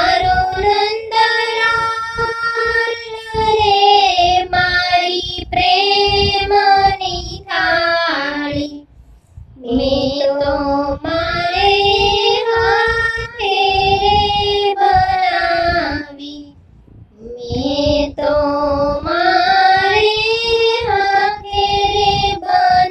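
A high solo voice sings a Gujarati devotional thal to Krishna in long, held phrases over instrumental accompaniment, with two short breaks between phrases.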